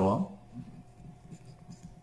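Ballpoint pen writing on paper, faint and irregular.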